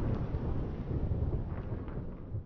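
The tail of a channel logo intro's sound effect: a low, noisy rumble with faint crackles near the end, slowly fading.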